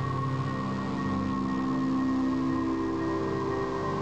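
Slow ambient background music of long held tones, one of them sliding gently down in pitch.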